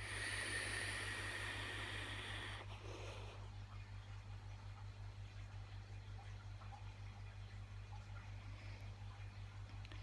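A draw on an iJoy Maxo V12 vape tank: a faint airy hiss of air pulled through the tank's airflow for about two and a half seconds, then a soft breath out. A steady low hum runs underneath.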